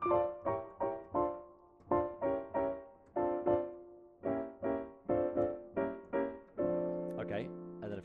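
Yamaha digital piano playing a quick run of two-handed block chords, about two a second, through the F sixth-diminished scale, moving between sixth-chord inversions and diminished chords. The run ends on one held chord near the end.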